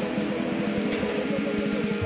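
Psychedelic rock band playing live: electric guitars working a repeating riff over sustained notes, with bass and drums keeping a steady beat.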